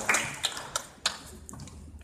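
Audience applause dying away into a few scattered, separate claps.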